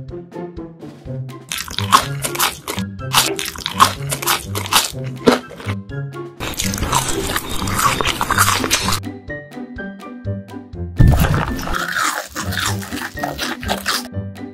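Cartoon eating sound effects over light background music: rapid crisp crunching bites of french fries, then a longer, noisier chewing stretch in the middle, and a deep thud near the end followed by more chewing.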